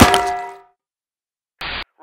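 A loud metallic clang at the start that rings for over half a second before fading. Near the end comes a short, abrupt burst of static, like a two-way radio keying up.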